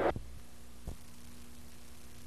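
Steady low electrical hum left on the recording once the room sound has cut out, with a click at the start and a second click about a second in.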